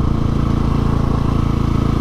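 Husqvarna 701 Supermoto's single-cylinder four-stroke engine running at a steady note while the bike cruises. The exhaust is one the owner says doesn't sound right and needs a repack.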